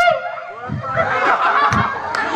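A group of people laughing and chattering at once, several voices overlapping, swelling about half a second in.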